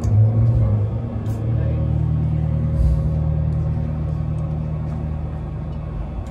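Amplified electric guitars and bass holding a slow, sustained low drone chord live, the low notes shifting once about a second and a half in, then ringing on and slowly fading.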